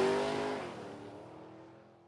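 Cartoon sound effect of a truck engine driving away: a humming engine note that drops in pitch about half a second in and fades out over the next second or so.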